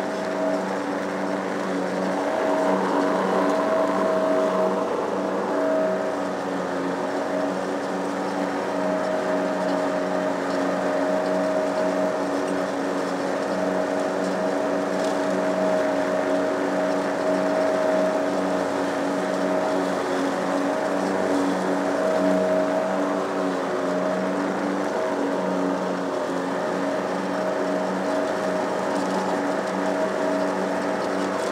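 Lawn mower engine running steadily while cutting grass, a constant drone with no change in speed.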